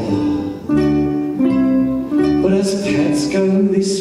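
Live ukulele and electric bass guitar playing a song, with a man singing a melody over them in short phrases.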